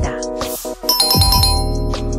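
Background music with a brief whoosh, then a bright chime-like sound effect about a second in that rings and fades.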